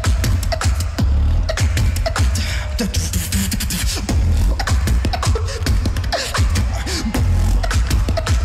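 Competition beatboxing through a microphone: a heavy, continuous deep bass line held tightly in time under crisp, sharp kick and snare hits, with quick falling sweeps layered on top.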